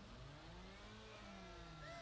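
Faint jeep engine revving in a film soundtrack, its pitch rising and falling in slow sweeps.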